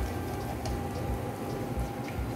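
Soft, steady brushing of a pastry brush spreading butter inside an aluminium tube cake pan, with a few faint light ticks.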